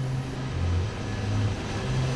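Large outside-broadcast truck driving: a steady low engine drone with road hiss.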